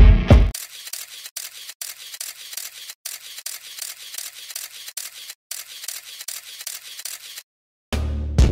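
Loud music breaks off in the first half second, then rapid camera shutter clicks run in quick bursts for about seven seconds, thin and high with no low end, stopping just before the end.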